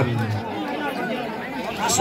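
Only speech: crowd chatter from spectators, with a man's voice talking loudly over it that stops about half a second in.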